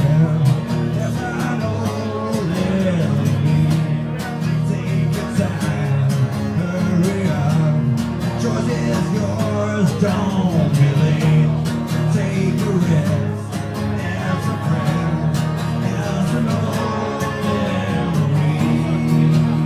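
Live music: strummed acoustic guitar with a singing voice, played steadily throughout.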